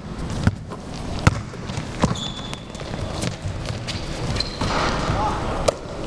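Basketball bouncing on an indoor gym floor: a handful of irregular bounces from dribbling, the sharpest about a second in, over the background noise of players in the hall.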